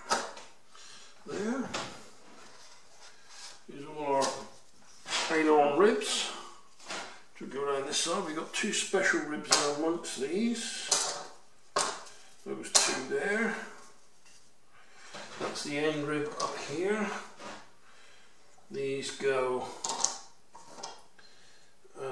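Thin wooden wing ribs of ply and balsa clattering as they are handled and laid down on a building board: scattered sharp clicks and light knocks throughout. A man's voice comes in at times between them.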